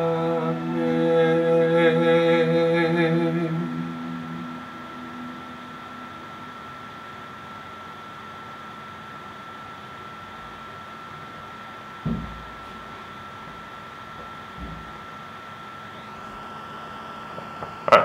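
A man's voice holding a long sung note that ends about four seconds in. Then steady low background hiss with a faint constant high tone, and a single dull knock about twelve seconds in.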